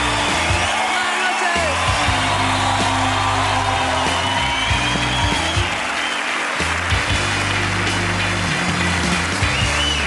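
Studio audience applauding while music with a steady bass line plays.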